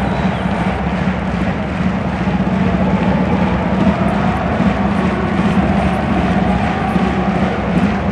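A large stadium crowd of football supporters singing in unison: a loud, steady drone of many male voices holding one low note.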